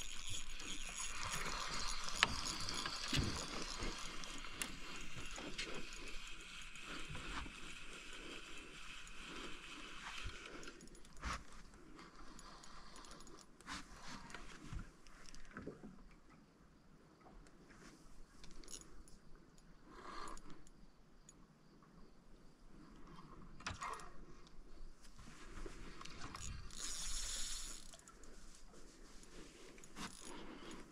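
Fishing reel being worked: a light, ratchet-like mechanical clicking and whirring, busier in the first ten seconds and then fainter and more scattered.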